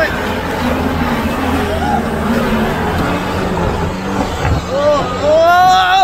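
Mahindra Bolero 4x4 engine running under load as it drives through deep mud, tyres churning and throwing mud. People shout over it, loudest near the end.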